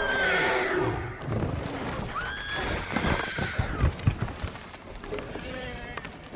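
A woman screaming in terror three times: a short scream at the start, a longer rising-and-falling scream about two seconds in, and a brief cry near the end. Heavy thuds and crashes of falling through branches sit beneath the screams.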